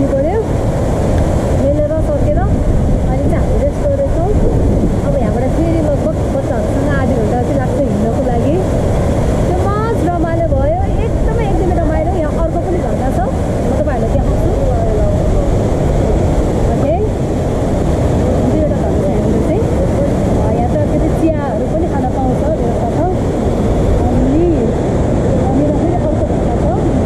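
Steady, loud rush of a waterfall and its swollen mountain stream, an unbroken roar of falling and churning water, with a woman's voice talking over it.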